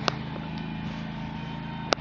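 Ventrac compact tractor's engine running steadily, driving its leaf blower attachment. Two short sharp clicks, one just after the start and one near the end.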